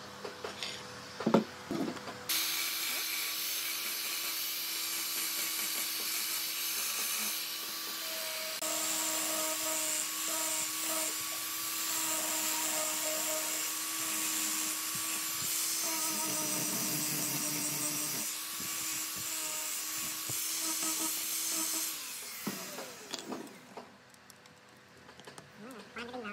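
Electric angle grinder with a sanding disc running steadily while wood is sanded against it, its motor hum and the rasp of abrasive on wood starting about two seconds in and spinning down near the end. A single sharp knock comes about a second in.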